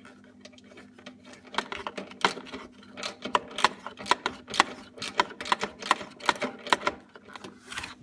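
Hard plastic parts clicking and tapping as hands tuck wiring and press a plastic cover back into place on a motorcycle's wiring housing. The clicks come in a quick, irregular run from about a second and a half in, over a steady low hum.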